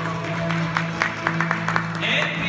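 Live orchestra of strings, ouds and percussion holding a sustained low note in a pause between sung lines. From about half a second in there is a run of sharp, irregular percussive hits.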